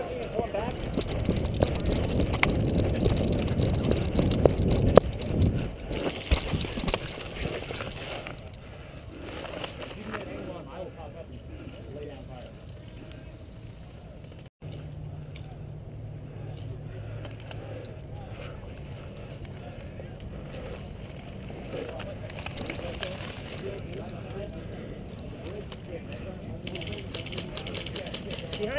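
Movement noise on a body-worn camera as an airsoft player moves and settles into dry brush: rumbling, rustling handling noise with a couple of sharp clicks in the first few seconds. After an abrupt cut about halfway through, a quieter stretch with a steady low hum.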